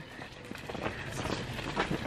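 Footsteps and a pushchair's small wheels rolling over an asphalt path: a run of irregular light clicks and scuffs.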